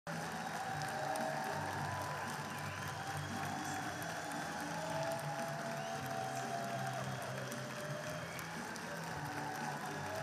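An audience applauding while music plays through the hall's PA speakers.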